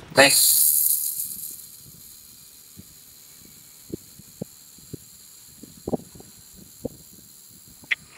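Handheld fiber laser welding gun of a Jasic LS-15000F: a loud hiss of shielding gas from the nozzle dies down within the first second or two to a faint steady hiss. From about four seconds in come scattered sharp ticks of spatter as the laser welds the steel tube.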